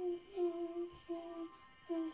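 Music: a simple melody of short held notes, four in a row with brief gaps between them.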